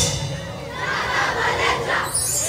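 Drumming cuts off at the start, and a crowd cheers and shouts, swelling about half a second in.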